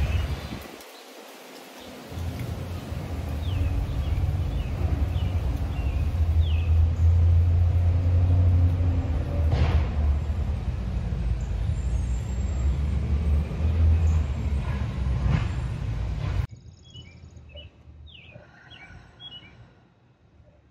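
Garbage trucks running close by: a steady low engine rumble with two sharp knocks, birds chirping over it. The rumble cuts off suddenly near the end, leaving only birdsong.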